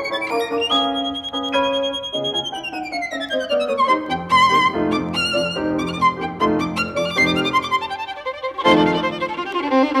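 Solo violin playing a lyrical classical melody with vibrato, with piano accompaniment. A high note is held and then slides down in a long descending run, and the melody continues lower over chords.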